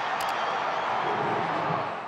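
Stadium crowd noise, a steady din of a large football crowd reacting to a touchdown.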